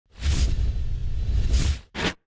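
Whooshing sound effect of an animated logo intro, with a deep rumble under it, lasting nearly two seconds, then a short second swish right at the end.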